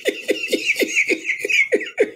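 A man laughing: a quick, even run of short "ha" pulses, about five a second, that stops abruptly just after the end.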